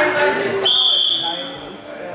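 Voices in the hall, then, just over half a second in, a single steady high-pitched whistle blast lasting just under a second: the referee's whistle stopping the wrestling bout.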